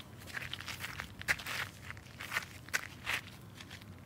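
Footsteps of people walking, a crisp step roughly twice a second.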